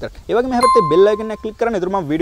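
A single bright electronic bell ding, about half a second in, ringing on one steady tone for about a second, over a man talking.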